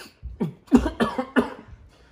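A person coughing: a quick run of about five short coughs over a second and a half, breaking off mid-sentence.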